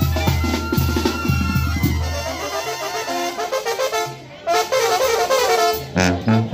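Live Mexican banda music: trombones, clarinets, sousaphone, snare drums and bass drum playing together. About two and a half seconds in, the low bass and steady drumbeat drop away; after a brief dip a little after four seconds, the brass comes back in loud.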